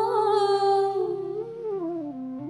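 A woman's voice holding a long wordless sung note that wavers and then glides downward in the second half, over low sustained musical accompaniment.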